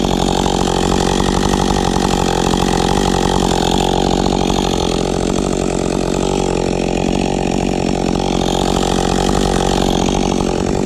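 Freshly rebuilt two-stroke chainsaw held at full throttle, cutting steadily into the trunk of a Douglas fir; a new rebuild being broken in. The engine note stays even, with no drop in revs or stop.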